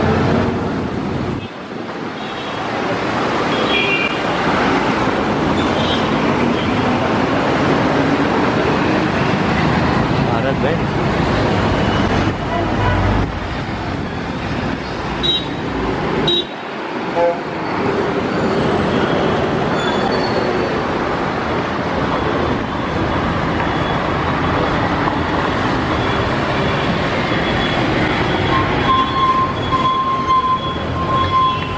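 Busy city road traffic: buses and cars passing with engines running, with occasional horn toots and voices in the background.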